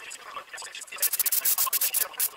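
Airbrush hissing in a quick run of short spurts from about a second in, as paint is sprayed past a paper mask.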